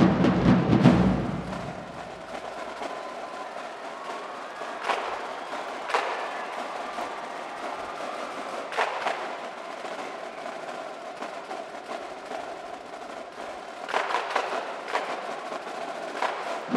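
Marching band drumline: bass drums playing loudly for the first second or so, then the snare line on Pearl marching snares carries a quieter, crisp passage with a few sharp louder accents, which grow busier near the end.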